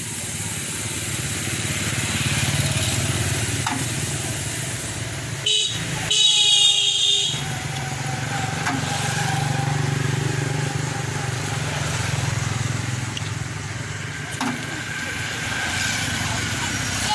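Kubota tractor's diesel engine running steadily at idle, with its horn sounding once for about a second about six seconds in.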